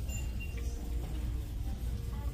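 Shop ambience: a steady low rumble with faint background music.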